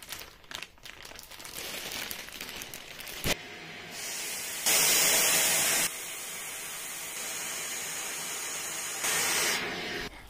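Plastic vacuum storage bag rustling as a clip is slid along its zip seal, ending in a sharp click a little over three seconds in. Then a vacuum cleaner nozzle held on the bag's valve sucks the air out with a steady hiss, louder for about a second around the five-second mark and again near the end.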